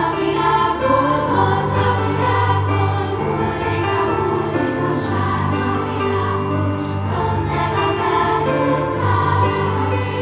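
Children's choir singing with grand piano and orchestra in a continuous piece of music, heard as a live concert in a large reverberant hall.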